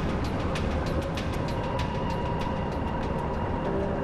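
A heavy ship's anchor chain running out: a dense, continuous metallic rattle of many quick clanks, with a low rumble under it. Music plays underneath.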